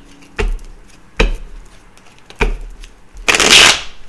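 A tarot deck being shuffled by hand: three sharp taps about a second apart, then a loud, brief riffle of the cards near the end.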